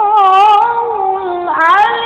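A child's high voice chanting Quranic-style recitation in a long, wavering melismatic line. The phrase breaks off and a new one rises about one and a half seconds in.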